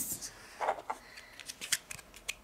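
Small plastic clicks and crinkles as a miniature toy car in its plastic blister pack is handled and set against a plastic toy shelf, a few short taps and rustles.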